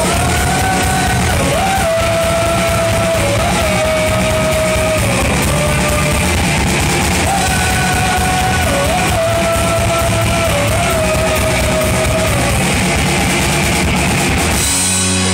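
Live rock band playing loud: drum kit with a steady cymbal beat, bass and electric guitars, and over them a melody of long held notes with small dips in pitch.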